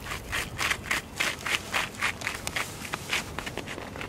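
Crunching footsteps on gritty asphalt, a quick, even run of steps that grows fainter in the last second or so.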